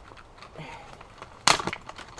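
Small objects and packaging being handled by hand: light rustling, then one sharp crack about one and a half seconds in, followed by a few small clicks.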